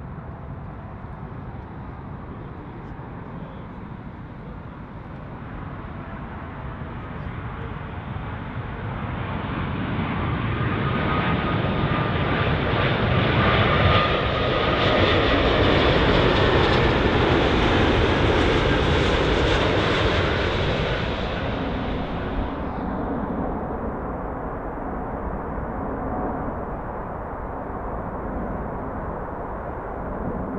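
Airbus A380's four jet engines on final approach. The sound builds as the airliner nears and is loudest for about ten seconds in the middle, with a faint steady whine, as it passes close by. It then fades as it goes away.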